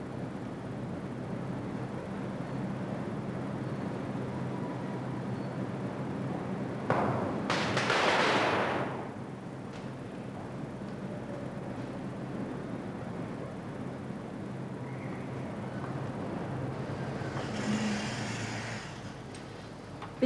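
Sodium reacting violently with water: a sudden loud burst about seven seconds in that dies away over about two seconds, with a second, softer burst near the end. Under it, a steady noise of water spraying from a hose, with a low hum.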